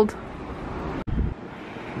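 Wind on the camera microphone outdoors: a steady rushing noise, cut off by a brief dropout about halfway through and followed by a short low rumble.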